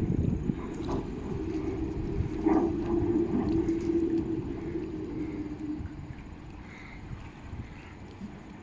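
Wind buffeting the microphone over a rough low rumble that eases toward the end, with a steady hum from about a second and a half to six seconds in.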